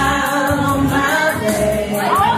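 Two women singing together into a microphone over loud backing music, holding long sustained notes.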